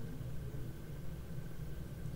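Room tone in a short pause between spoken phrases: a steady low hum with light hiss and a faint thin whine.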